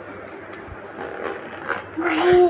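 A low hiss from the pan of crab masala, with a few light clinks near the end as a metal spatula goes into the aluminium kadai to stir it.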